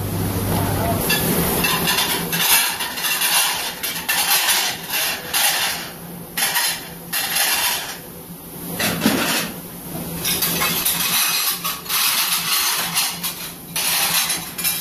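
Ceramic plates clattering and knocking together as a stack is handled at a stainless steel dish sink, in quick irregular clinks, over a steady low hum.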